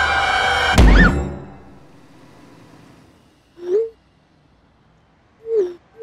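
A horror film score's sustained, dissonant chord cut off by a loud jump-scare impact hit about a second in, which rings out and fades. Later, two short pop-like blips sound a couple of seconds apart: text-message notification tones.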